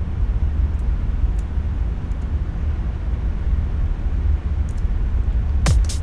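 A steady low rumble with little higher sound in it. Just before the end, a programmed electronic drum beat starts up: kick drum, clap and hi-hat.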